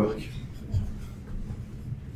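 The tail of a spoken word, then a pause filled with faint room noise and a steady low hum. A soft low thump comes a little under a second in.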